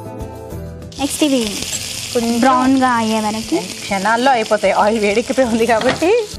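Chopped onions sizzling in hot oil with cumin seeds in a frying pan, a loud hiss that starts about a second in and keeps on as they are stirred with a wooden spatula. Background music with singing plays over it.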